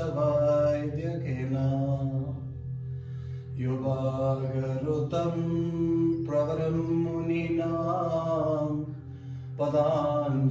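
Slow mantra chanting in long held notes, with short pauses for breath about two and a half seconds in and near the end, over a steady low drone.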